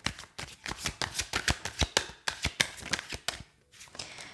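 A tarot deck being shuffled by hand: a quick run of short card clicks and slaps that stops shortly before the end.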